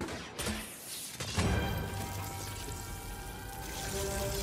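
Film score music mixed with sound effects: a sudden rush at the start and a loud hit about a second and a half in, then held chords over a low rumble.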